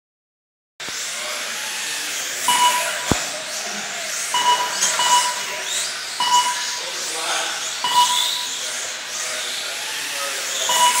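Short electronic beeps from an RC race lap-timing system, five in all, one or two seconds apart, each marking a car crossing the timing line. They sound over a steady hiss from the small electric RC cars running, with a single sharp knock about three seconds in.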